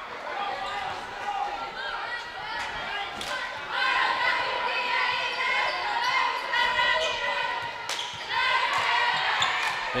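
A basketball being dribbled on a hardwood gym floor, with a few sharp bounces, under the voices and shouts of spectators and players in the gym. The voices swell from about three and a half seconds in and again near the end.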